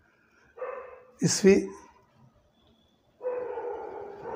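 Drawn-out animal calls in the background: a short one about half a second in, then a longer, steady one starting about three seconds in. A brief spoken syllable falls between them.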